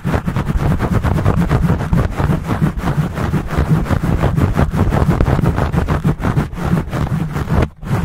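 Fingertips scratching fast and hard on a foam microphone windscreen, right against the mic: a dense, rapid scratching with a heavy low rumble, breaking off briefly near the end.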